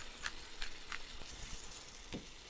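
Hand pepper mill being twisted over a frying pan, grinding multicoloured peppercorns with a few faint crackling clicks, over a steady low sizzle of tomatoes cooking in olive oil.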